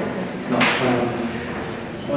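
People talking around a meeting table, with a short rustle or scrape about half a second in.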